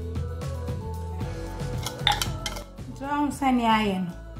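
A metal spoon clinks and scrapes against bowls as chopped vegetables are spooned out. There are a few sharp clinks about two seconds in, over background music with a steady beat.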